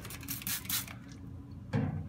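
Trigger spray bottle spritzing water onto a whetstone, several quick hissing sprays in the first second. A single knock follows near the end, as something is set down.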